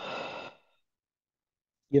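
A man's short breathy sigh lasting about half a second, followed by silence until he starts to speak near the end.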